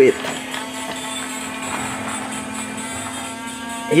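Battery-operated bump-and-go toy excavator running: its small electric motor whirring with a steady hum, and its built-in music playing faintly over it.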